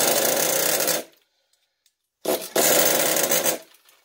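Small two-stroke glow-plug engine of an RC10GT nitro truck, run on gasoline, firing in two short bursts of about a second each and cutting out abruptly between them. It runs rough and will barely idle, doesn't sound very good.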